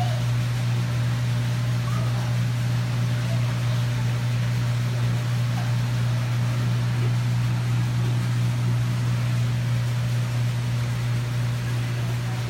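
Steady low machinery hum with a faint hiss over it, unchanging throughout.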